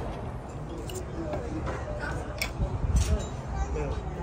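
Faint voices with a few short, light clicks of tableware against plates, over a low rumble.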